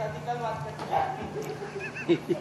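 A person's voice making short, wordless pitched sounds, over a steady low hum.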